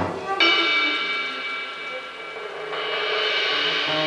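Soprano saxophone in a live jazz quartet holding a long note, then moving to another long note about two and a half seconds in.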